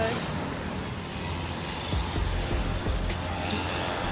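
Street traffic noise: a steady low rumble of passing cars.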